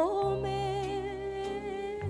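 Woman singing a Japanese popular song (kayōkyoku) with band accompaniment: she slides up into one long held note with vibrato, over sustained low notes from the band.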